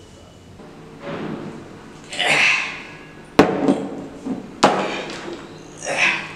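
Sounds of a struggle while someone is tied to a chair: rustling and muffled vocal noise, with two sharp knocks about a second apart in the middle and another swell of noise near the end.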